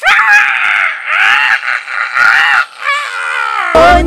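A woman screaming in three long, high cries and a shorter falling one about three seconds in.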